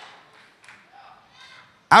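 A pause in a man's amplified speech in a large hall: faint room sound and faint distant voices, then his voice through the microphone resumes just before the end.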